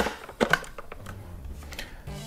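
Two sharp clicks about half a second apart as a drive is pushed into a slot of an Orico dual-bay drive cloning dock, then only a faint low hum.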